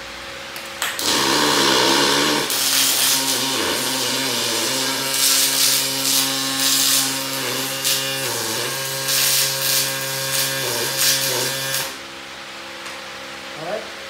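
Electric arc welding with a Castolin Eutectic welding machine: the arc strikes about a second in and runs for about eleven seconds as a loud, uneven hiss over a steady buzzing hum, then cuts off suddenly.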